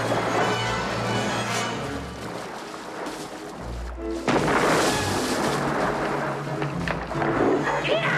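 A dramatic orchestral film score plays, broken about four seconds in by a sudden loud crash of splashing water from the thrashing shark. A man shouts near the end.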